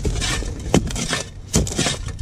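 Steel shovel blade scraping and digging into sand under a concrete sidewalk slab, with a few sharp scrapes about a third of the way in and again near the end.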